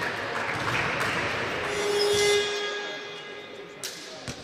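Echoing sports-hall noise with a few sharp knocks, then a ringing chime-like tone of many steady pitches that swells about two seconds in and fades away, with another sharp knock near the end.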